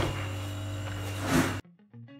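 Steady low hum with a faint steady whine, then a sudden cut to soft, quiet guitar music.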